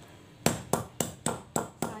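Stone pestle striking boiled jengkol beans in a volcanic-stone mortar (ulekan on cobek): six sharp knocks at about four a second, starting half a second in. The beans are being smashed flat so their black skins come loose.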